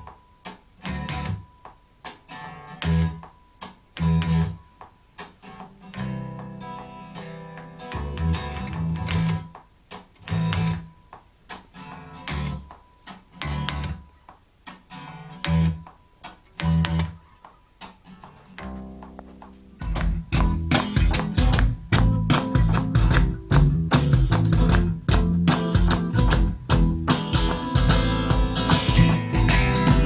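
Electric bass guitar plucked in short, spaced-out notes with gaps between phrases. About twenty seconds in, a much louder full band mix with drums comes in.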